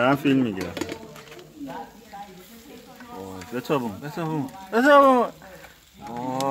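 People's voices making short, drawn-out vocal sounds without clear words, several falling in pitch, loudest at the start and about five seconds in.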